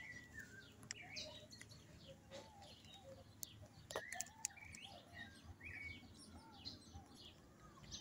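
Faint chirping of birds: many short whistled notes scattered through, several calling at once, with a few sharp faint clicks near the middle.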